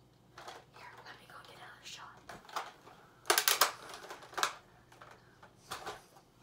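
Soft whispering, then a loud cluster of sharp clicks and rustles about three and a half seconds in, with two shorter ones near the end.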